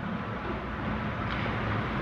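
A pause in a recorded lecture: a steady background of hiss and low hum from the recording, with no distinct event.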